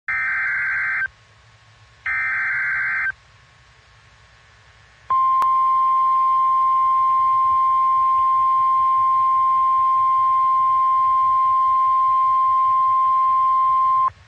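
NOAA Weather Radio emergency alert: two one-second bursts of the SAME digital header data, a warbling buzz, then the 1050 Hz warning alarm tone held steady for about nine seconds, with a single click just after it starts. Together they signal an incoming weather warning broadcast.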